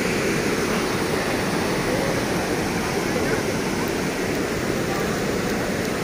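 Floodwater rushing through a breach in an earthen embankment: a steady, loud rush of churning muddy water.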